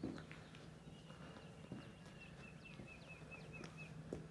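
Faint outdoor quiet with a distant bird singing: a thin, held high note, then a quick run of short repeated notes near the end. A few faint knocks are heard.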